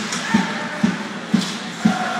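Ice hockey supporters' section in the stands beating a drum in a steady rhythm, about two beats a second, over crowd noise.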